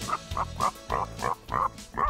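Pig grunting, a run of about seven short grunts at roughly three a second, over background music.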